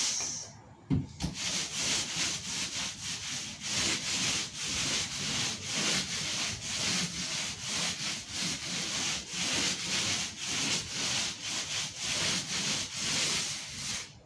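Paint roller rolling wet paint onto a wall in back-and-forth strokes: a repeated rasping swish about twice a second, with a single knock about a second in.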